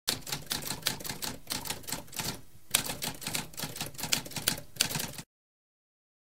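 Typewriter keys clacking in a rapid run of strokes, with a brief pause about halfway through, stopping abruptly about five seconds in.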